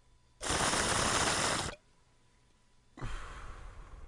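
Two rushes of breathy noise: a loud one lasting just over a second that starts and stops abruptly, then a softer one about a second later that fades slowly.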